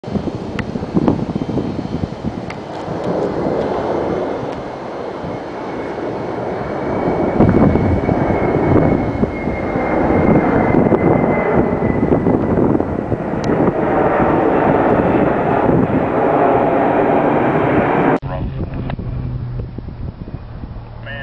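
DC-10 air tanker's three jet engines passing overhead: a loud, rushing jet noise with a thin high whine that slowly falls in pitch. The sound breaks off abruptly near the end.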